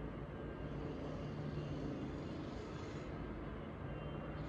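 Quiet, steady low background rumble with a faint hum, and no distinct events.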